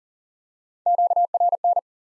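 Morse code at 40 words per minute: a single steady tone keyed into quick dots and dashes for a little under a second, starting about a second in. It is the code for the ham-radio QSO element 'noise'.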